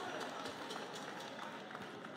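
Faint steady background noise, a low hiss of room or street ambience, with a few light ticks and no voice.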